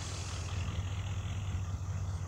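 A car engine idling: a low, steady rumble.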